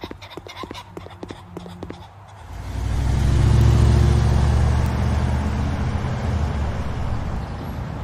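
Quick running footsteps, then a car engine comes in loudly about two and a half seconds in as the car pulls away, a steady low drone that slowly fades.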